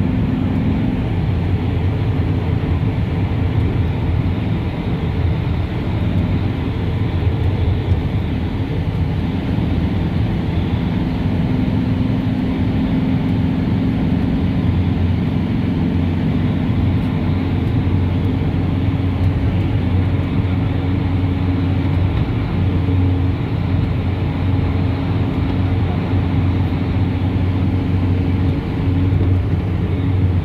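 Steady engine and road noise heard from inside the cabin of a moving vehicle, a low even hum with no sudden events.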